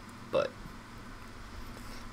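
A man says a single short word, then quiet room tone with a faint steady hum.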